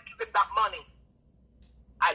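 A person's voice speaking for under a second, then a pause of about a second.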